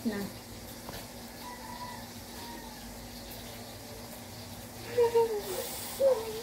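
Quiet room with a steady low electrical-sounding hum. A short voice sound comes about five seconds in, followed by a brief hiss near the end.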